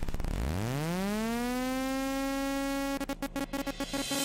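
Synthesized electronic buzzing tone that glides up in pitch from very low over about a second, holds steady, then stutters in rapid chops near the end: a trailer transition sound effect.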